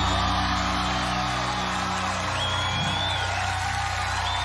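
A live band holding a long low closing chord while a large audience cheers, with high whoops rising over it near the end.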